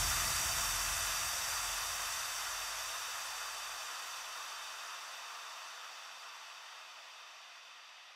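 The closing noise tail of an electronic dance track: a hiss, like a white-noise wash or reverb tail, fading slowly and evenly after the final hit. Its low rumble dies away about two-thirds of the way through, leaving a faint high hiss.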